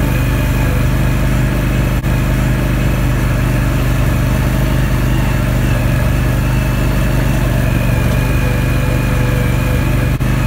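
ATV engine running steadily at a low, even speed while the quad creeps along a grassy trail.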